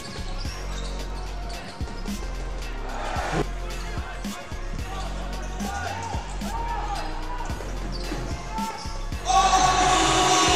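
A basketball is dribbled and passed on a hardwood court, with repeated bounces, a few sneaker squeaks, and arena crowd noise beneath. Near the end a loud arena horn sounds abruptly as the game clock runs out, ending the quarter.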